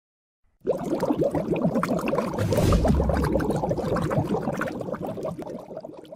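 Bubbling-water sound effect: a dense stream of small bubble blips that starts suddenly, with a deeper rushing surge about two and a half seconds in, then fades away near the end.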